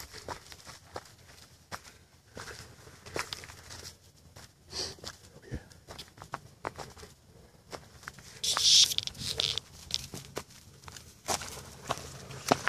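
Footsteps through dry fallen leaves and twigs: irregular light crackles and snaps, with one louder rustle of about a second roughly two-thirds of the way in.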